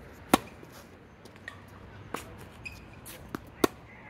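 A tennis rally on a hard court: a tennis ball struck by rackets and bouncing. There are two loud, sharp racket hits, about a third of a second in and near the end, with fainter pops in between from the ball's bounces and the far player's return.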